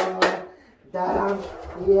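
Hands clapping twice in quick praise at the start, over a person's wordless voice. After a short lull the voice comes back.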